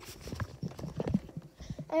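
Irregular knocks and rubbing of a handheld phone being jostled against clothing.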